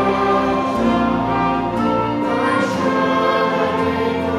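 Hymn sung by many voices together, with piano and other instruments accompanying: sustained chords that shift every half second or so, loud and unbroken.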